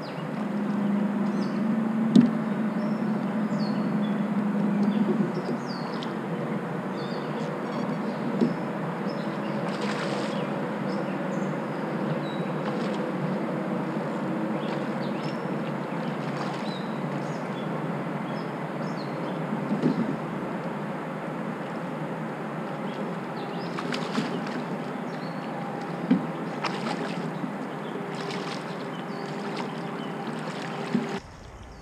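Fishing kayak under way along the bank: a steady hum from its drive over water noise, louder for the first few seconds. Several sharp clicks and knocks stand out, about two, eight, twenty and twenty-six seconds in.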